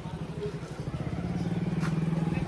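Motorcycle engine running and drawing nearer, growing steadily louder.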